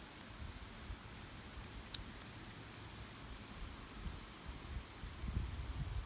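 Faint outdoor background noise: light rustling with uneven low wind rumble on the microphone.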